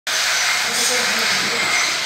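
Indistinct voices under a steady, loud hiss.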